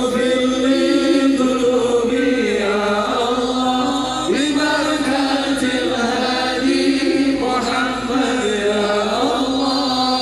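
Sholawat, Arabic Islamic devotional song, chanted in long held, ornamented notes.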